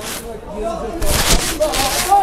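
Distant shouting from players and spectators around an outdoor football pitch, thin and far off. A steady hiss of noise comes in about a second in and lasts to the end.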